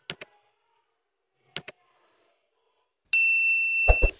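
Sound effects of a like-subscribe-bell overlay: two quick pairs of mouse clicks, then about three seconds in a loud, bright, steady electronic notification ding that rings on to the end, with a low thump just before it stops.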